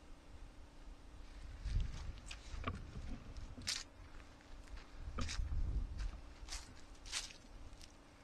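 Footsteps through grass and dry leaves: a few dull thumps with several short, sharp crackles in between.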